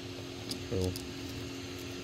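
Creality Ender 3 V3 SE 3D printer running mid-print, giving a steady hum from its fans and motors.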